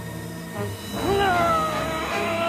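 Background film music; about a second in, a long high-pitched wailing cry starts, dips slightly in pitch and is held.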